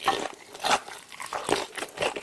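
Close-miked chewing and wet smacking on a fried chicken drumstick coated in spicy sauce, as the meat is torn from the bone, with louder smacks about every three quarters of a second.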